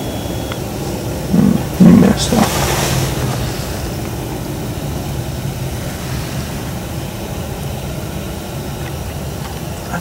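A hunting rifle fired from inside a fabric ground blind about two seconds in: a loud, clipped shot with a lesser thump just before it and a brief hiss after. Steady low background noise follows.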